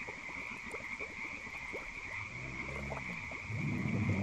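Frogs croaking in a steady chorus, with many short croaks and a deeper, drawn-out call in the second half.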